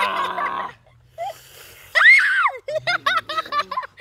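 Children screaming and crying out from the burn of a hot chilli: a harsh shriek at the start, a high wailing cry about two seconds in, then a quick run of short yelps.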